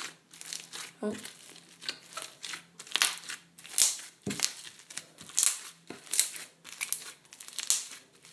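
Black floam slime with foam beads being squished and kneaded by hand, giving a run of sticky crackles and pops, irregular, a few each second.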